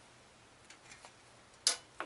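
Near-silent room tone with a few faint ticks, then one sharp click about one and a half seconds in.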